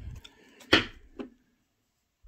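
Tarot cards handled on a wooden tabletop, with a sharp tap about three quarters of a second in and a lighter tap about half a second later.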